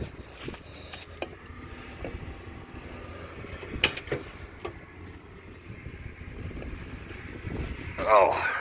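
Tractor engine idling steadily, with a few sharp knocks and scrapes from boots and hands on the steps as someone climbs into the cab; the loudest knock comes a little under four seconds in.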